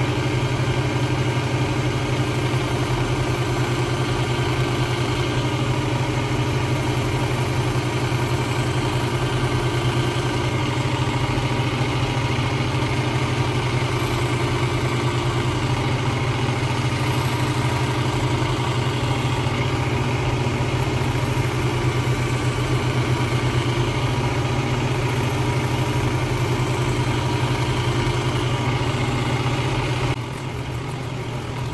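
Work Sharp Ken Onion Edition electric belt sharpener running steadily with a low hum, driving a leather stropping belt on its blade grinding attachment while a Damascus straight razor's edge is held against the belt.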